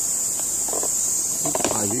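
Steady high-pitched hiss that holds at an even level throughout, with a man starting to speak near the end.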